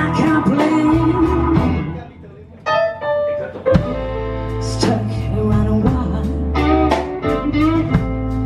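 Live blues band playing, with electric guitar over keyboards, bass and drums. About two seconds in the band stops, a lone note is held for about a second, and the full band comes back in just before four seconds in.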